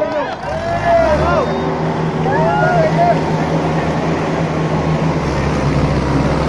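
Diesel tractor engine running hard under load in a tractor tug-of-war, a steady low drone that comes in about half a second in, with men in the crowd shouting over it.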